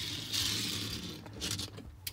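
Small toy car rolling across a textured bench top, its little plastic wheels making a grating hiss that fades out about a second in, followed by a short scrape.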